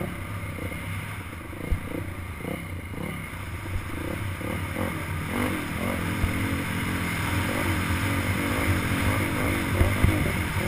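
Dirt bike engine heard from the rider's helmet camera, its pitch rising and falling as the throttle is worked over a rough trail, getting louder in the second half. A few sharp knocks sound as the bike hits bumps.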